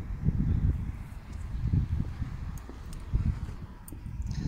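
Wind buffeting the phone's microphone: a low, irregular rumble.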